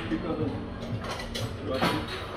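Dishes and serving utensils clinking, with several sharp clinks, the loudest near the end, over a murmur of background voices.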